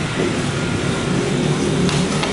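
Steady low rumble of a vehicle engine, with a couple of faint clicks near the end.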